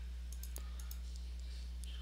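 A few faint, scattered computer-mouse clicks over a steady low electrical hum from the microphone.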